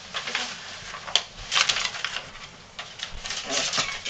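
Paper rustling and crinkling in quick irregular bursts as a child pulls paper out of an opened present. There is one sharp tick about a second in.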